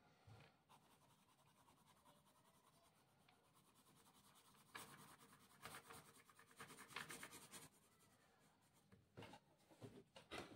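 Graphite pencil shading on paper: faint, quick back-and-forth scratching strokes, busiest from about five to nearly eight seconds in.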